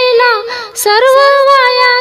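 A high solo voice singing a line of a Marathi Vitthal bhajan. The phrase is melismatic with gliding ornaments, breaks briefly about half a second in, then carries a long held note, with little or no instrumental accompaniment.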